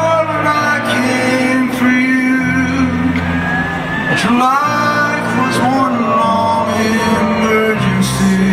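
Live rock performance: a male singer's voice held and sliding in pitch near the middle, over sustained instrumental accompaniment.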